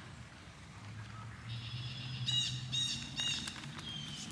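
A bird calling: a quick twitter starting about halfway in, then three short chirps about half a second apart, over a faint low hum.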